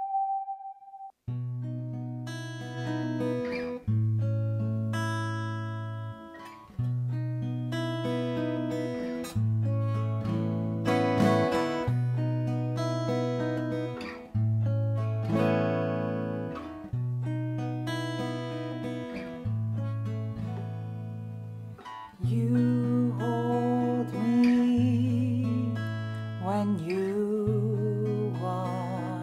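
Epiphone acoustic guitar playing a song intro, starting about a second in: chords struck every one to two seconds and left to ring over held bass notes. Near the end, a wordless sung voice comes in over the guitar.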